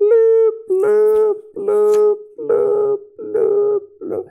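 A man's voice humming or chanting about five short notes on one unchanging pitch, a sing-song monotone that mimics someone reading through an instruction manual.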